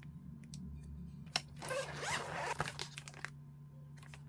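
Hands handling clear plastic photocard sleeves and a photocard binder: a sharp click, then about a second of rasping plastic rustle, then a few small clicks.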